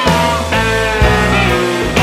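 Live rock band playing an instrumental passage, with electric guitar over bass and drums.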